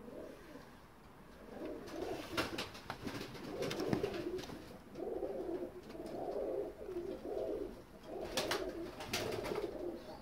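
Several Pakistani teddy pigeons cooing, their low rolling coos overlapping in repeated phrases. A few sharp clicks come through the cooing.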